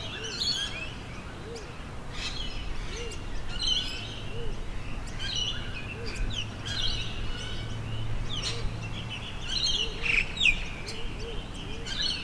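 Several birds chirping and calling, with many short high notes and quick downward-sweeping whistles, over a softer repeated low note and a faint steady hum.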